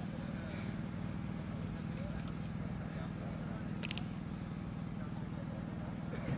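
A steady low engine hum, a motor running at idle, with faint voices in the background.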